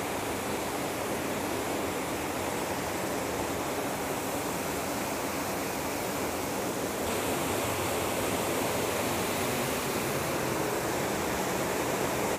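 Waterfall dropping down a rock face into a plunge pool: a steady, unbroken rush of falling water.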